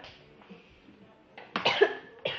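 A girl coughs hard once near the end, a short harsh burst after a quiet second and a half.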